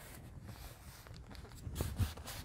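Faint rustling of paper as hands press and smooth a glued journal page closed, with a soft tap near the end.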